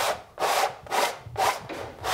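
A large paintbrush swept back and forth across a painted canvas, the bristles brushing over the surface in four quick strokes, about two a second.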